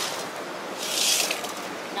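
Shallow creek water running steadily, with a brief swish of water splashing in a metal pan dipped into the stream about a second in.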